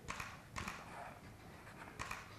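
Faint handling noise: a few soft clicks and rustles as paper and a picture frame are handled, over quiet room hiss.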